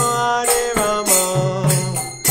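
Devotional kirtan: voices chanting a mantra over sustained melody notes, with hand cymbals (kartals) struck in a steady beat about twice a second.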